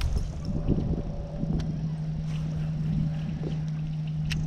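Steady low hum of a boat's motor setting in about a second and a half in, with wind rumbling on the microphone and a few light clicks and knocks.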